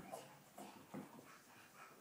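Near silence: room tone with a few faint, short sounds.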